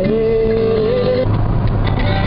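Music with a wavering melody cuts off about a second in, leaving the steady low drone of a car's engine and tyres heard from inside the cabin.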